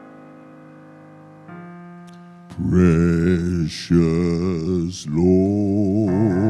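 Keyboard chords held and slowly fading, then about halfway through a man's solo voice comes in loudly over the accompaniment, singing long notes with heavy vibrato through a microphone, with two brief breaks.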